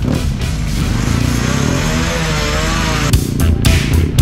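Background music with a steady beat. From about a second in, a BMW boxer-twin motorcycle engine revs with a wavering pitch as the bike pulls away, and the beat comes back near the end.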